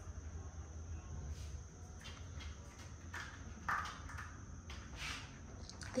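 A cat pawing and scrabbling at the foot of a door and a rubber doormat, trying to get at a small creature hiding under the door: a few short, faint scuffs and taps, the loudest about three and a half seconds in, over a steady low hum.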